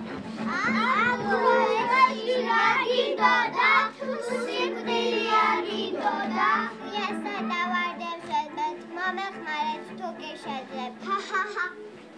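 Children's voices over background music.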